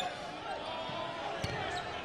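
Court and crowd sound of a college basketball game in an arena: a steady murmur of the crowd, with one sharp thud of the ball on the hardwood floor about one and a half seconds in.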